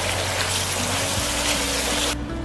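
Minced pork, diced green pepper and sauces sizzling steadily in a hot wok as they are stir-fried.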